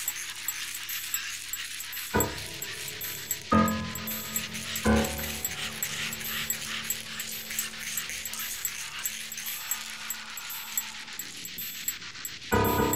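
Live electronic music built from processed water samples: a steady rushing hiss underneath, with three struck, pitched notes about a second and a half apart, one low tone ringing on for several seconds.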